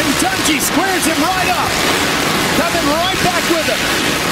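Dirt bike engines revving up and down through the turns of a supercross race, over the steady noise of a stadium crowd, with a commentator's voice partly heard.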